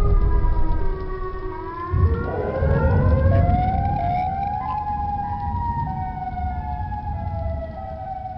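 Several sirens wailing at once, their long tones sliding slowly up and down in pitch, over a loud low rumble. The rumble eases about a second in and comes back about two seconds in.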